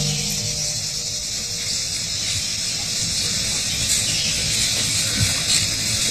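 Steady, high-pitched hiss of a tropical rainforest insect chorus, unbroken throughout.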